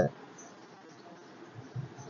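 Faint room tone in a pause between a man's words, with a brief low sound near the end.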